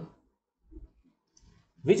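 A man's voice trails off at the start, then two faint, short clicks sound in the pause before his voice resumes near the end.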